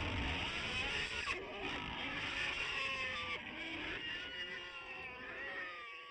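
Closing tail of a black metal track after the band stops: a quiet layer of several wavering, gliding wail-like tones that fade away to nothing at the end.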